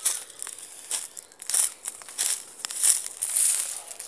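Footsteps crunching through dry leaf litter and twigs, a step about every two-thirds of a second.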